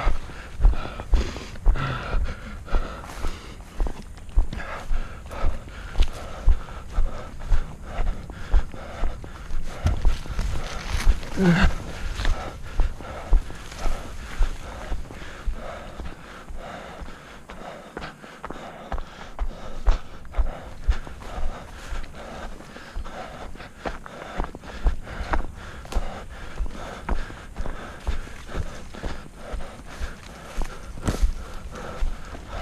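Footsteps of an orienteer moving on foot through forest undergrowth, a steady tread of about two steps a second that eases off briefly a little past halfway.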